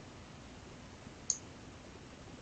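A single short computer mouse click about a second in, over a faint steady hiss.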